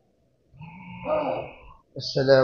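A man's brief wordless vocal sound through a microphone, starting about half a second in and fading out near the end.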